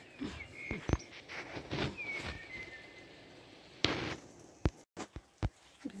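Small birds chirping a few short calls in the first half, one call gliding down, amid scattered light clicks and knocks. Near the end there is a short noisy burst, then the sound cuts out abruptly.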